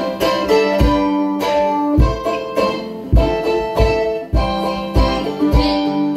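Live acoustic band in an instrumental break: strummed ukulele and another plucked string instrument with harmonica playing held notes, over a low thump on each beat.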